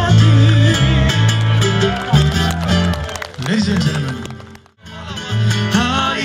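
Hawaiian hula music played on guitar and bass with a voice singing. The song winds down about four seconds in and stops briefly, and a new song starts near the end.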